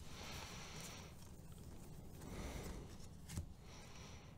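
Faint rustling of a stack of Bowman baseball cards being slid and flipped one at a time, card stock rubbing against card stock, with a single light click a little over three seconds in.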